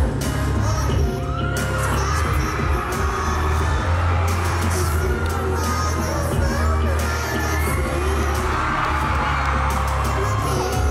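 Live pop band playing in a theatre, heard from the audience, with a steady heavy bass under it, while the crowd cheers and high voices shout and sing along over the music.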